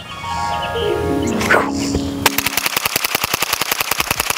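A descending musical sound effect, then a rapid string of shots, about ten a second, from a Ruger 10/22 .22 rifle with a Franklin Armory binary trigger, which fires once on the pull and again on the release.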